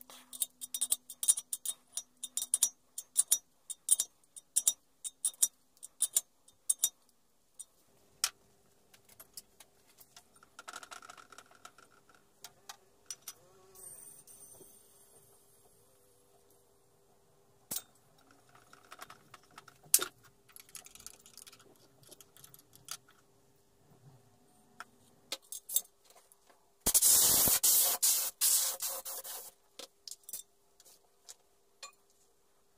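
Metal fittings and a tire-inflator gauge clicking and clinking against a homemade steel air tank and its quick-coupler, many small clicks at first and then scattered ones over a faint steady hum. Near the end comes a loud rush of compressed air hissing for about two and a half seconds.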